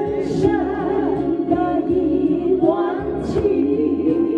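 A group of women singing together into microphones, amplified through a sound system, with wavering vibrato on the held notes.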